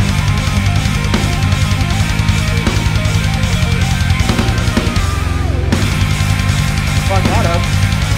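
Heavy-metal music: an extended-range electric guitar played over a backing track with a driving drum kit and sustained low notes, running steadily at full level.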